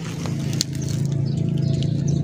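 Steady low mechanical hum with one sharp click about half a second in.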